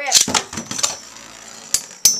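Two Beyblade Metal Fusion spinning tops launched by ripcord into a plastic stadium: a quick zipping whir of the ripcord launchers, then the spinning tops rattling on the plastic dish and clicking against each other, with a sharp click near the end.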